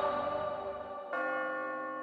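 A bell struck once, about a second in, ringing on and slowly fading, over the dying tail of an earlier ringing sound.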